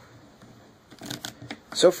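S.H. MonsterArts King Kong plastic action figure handled in the fingers: a quick cluster of small plastic clicks and rustles about a second in.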